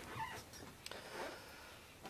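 A hushed room with faint rustling and a single light click about a second in, as people stand quietly.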